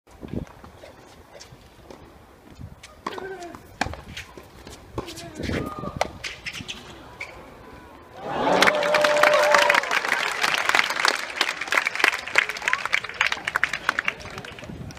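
Tennis spectators: a few voices and sharp knocks at first, then about eight seconds in a sudden burst of clapping and cheering with one loud held shout, the clapping carrying on to the end.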